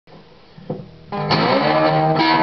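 Cigar box guitar starting to play: after a faint tap, it comes in about a second in with loud, ringing picked notes and chords.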